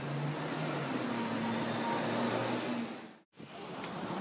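Street traffic noise with the steady low hum of a vehicle engine. The sound cuts out abruptly for a moment a little past three seconds in.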